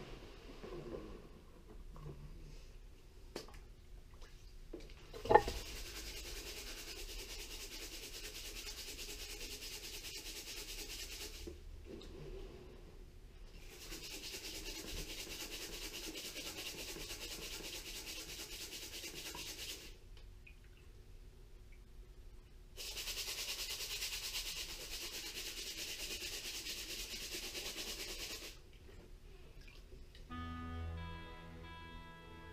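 Wet paydirt being washed and worked through a metal mesh strainer over a plastic gold pan in a tub of water: a sharp knock about five seconds in, then three stretches of steady hissing water and gravel, each several seconds long, with brief lulls between.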